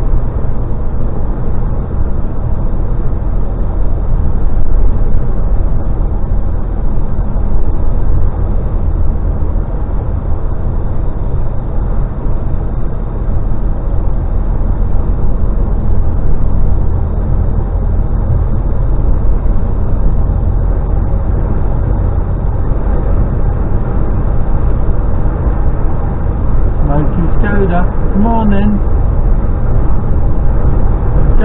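Steady low drone of a DAF XF lorry's diesel engine and tyre noise, heard from inside the cab while cruising at an even speed.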